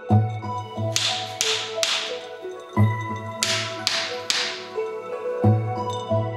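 Two sets of three sharp slaps, each about half a second apart, over soft background music: a Zen monk's keisaku, a flat wooden stick, striking a seated meditator's shoulders during zazen.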